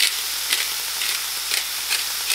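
Crumbled tofu scramble sizzling in a frying pan, a steady hiss broken by short scratchy strokes about twice a second.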